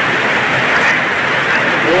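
Heavy rain pouring down onto a corrugated metal roof, a steady dense hiss.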